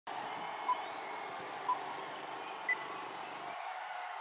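Countdown beeps over the venue sound system: two short beeps a second apart, then a higher beep a second later, over a steady background noise that thins out near the end.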